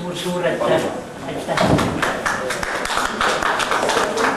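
People's voices in a room, with a quick, irregular run of short sharp taps starting about one and a half seconds in.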